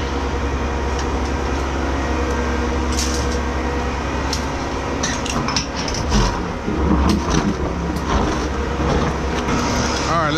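Truck engine and its engine-driven product pump running steadily in reverse, with metal clinks and knocks as the hose's camlock coupling is unlatched and pulled off the tanker's outlet. The knocks come mostly between about five and eight seconds in.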